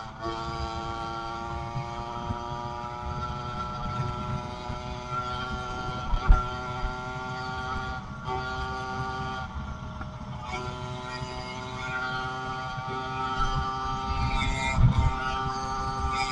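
A 110cc two-stroke motorized-bicycle engine running at a steady cruising pitch, which breaks off briefly several times, with wind rumbling on the microphone.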